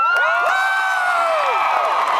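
Concert audience cheering and whooping, many voices rising and falling at once, with a few claps. It is the crowd's response to the song ending.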